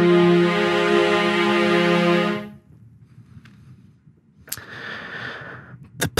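Sampled string ensemble from the Soundiron Hyperion Strings Micro library holding a sustained chord, which stops sharply about two and a half seconds in. Near the end a soft click is followed by faint hiss.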